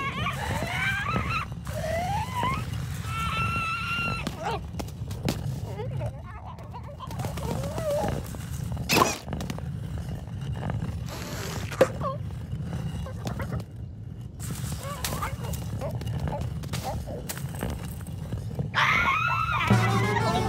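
Animated cartoon soundtrack: a steady music bed under short wordless character vocalizations, with a sharp hit about nine seconds in and another about twelve seconds in.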